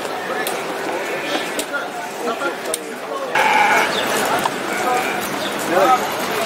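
A sheep bleats once, a held call of about a second midway through, over scattered chatter of people's voices.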